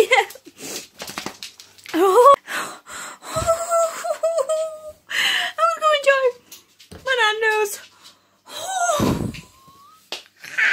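A woman's wordless, high-pitched vocal sounds: a string of short squeals and wheezy, breathy laughing, some gliding up in pitch.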